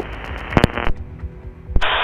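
Aircraft radio hiss with a click, cutting off just under a second in, over the low steady drone of the microlight's propeller engine; another click near the end as the next radio transmission opens.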